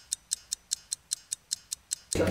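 Ticking-clock sound effect marking a time skip: a fast, even run of sharp ticks, about five a second.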